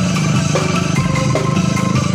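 Bamboo angklung ensemble playing a song: struck bamboo xylophone notes over a dense, steady bamboo bass, loud and continuous.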